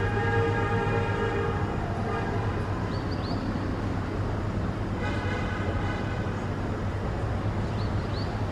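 Two long, steady horn blasts, the first about two and a half seconds long at the start and the second about two seconds long from halfway. They sound over a steady low traffic rumble. A few short, high, rising chirps fall between and after them.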